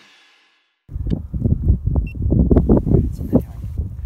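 Electric-guitar music fades out, then, after a brief silence, outdoor phone-microphone audio cuts in: uneven low rumbling of wind on the microphone with a few short knocks.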